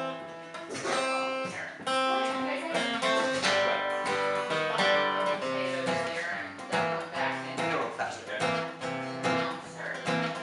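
Two acoustic guitars playing together, chords strummed in a steady rhythm of about one a second.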